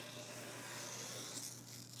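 Faint scratching of a pocket-knife blade dragging through the paper of a vinyl decal's transfer sheet. The blade is dull and does not want to cut paper.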